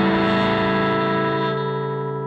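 Fender Custom Shop 2018 Limited '68 Stratocaster Relic electric guitar through an amp: a chord struck just before rings on as one sustained sound and slowly fades, with no new notes picked.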